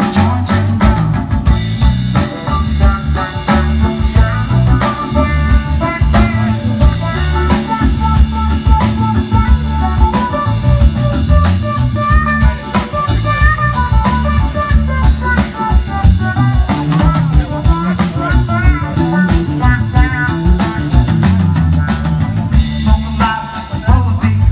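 Live band playing an instrumental break with no vocals: drum kit and acoustic and electric guitars, with a lead melody line over them.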